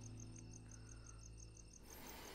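Near silence with crickets chirping faintly and steadily, about seven high chirps a second, over a low steady hum.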